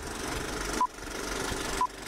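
Old-film countdown leader effect: a short, high beep about once a second, twice, over the steady whirr and rattle of a running film projector.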